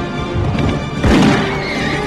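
Dramatic orchestral trailer music with a horse neighing about a second in, the loudest moment.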